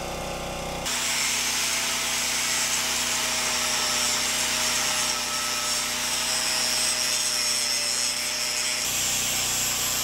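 Angle grinder starting up about a second in and grinding steel: a steady high whine over a harsh grinding hiss, taking weld slag off the ends of a steel plate.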